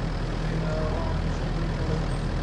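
A steady low engine rumble, like distant motor traffic or a small aircraft, holding at an even level.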